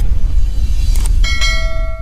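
Intro sound effects of a subscribe-button animation: a deep rumble throughout, a short click about a second in, then a bright bell-like chime that rings for about a second.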